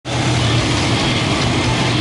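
Monster truck engine idling loudly and steadily, with a rapid low pulsing chatter under a steady drone.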